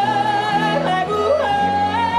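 Live country band with a woman singing a wordless yodel, her held notes breaking suddenly up and down in pitch, over acoustic guitars, electric bass and fiddle.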